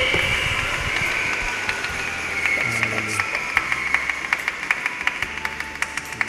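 Audience clapping, with sharp hand claps coming in about a second and a half in at roughly five a second, over keyboard music with held low notes.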